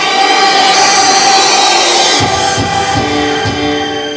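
A children's choir holds a sustained chord over its accompaniment. About two seconds in, the singing gives way to the instrumental accompaniment alone, with keyboard chords and a pulsing bass line.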